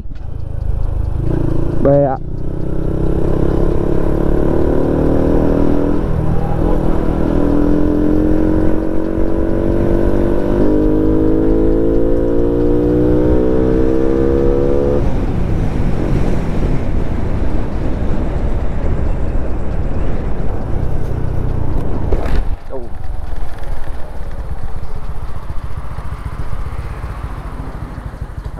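Tuned Honda Wave 54 FI motorcycle engine revving up through the gears. Its pitch climbs three times, dropping back at each shift, then it runs on steadily at cruise with wind rushing over the microphone.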